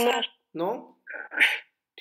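Speech: a few short spoken utterances, one of them "no", heard over a video call.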